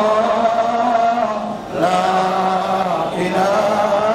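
A man's voice chanting in a slow melodic intonation, holding long, nearly level notes of a second or more, with two brief breaks for breath.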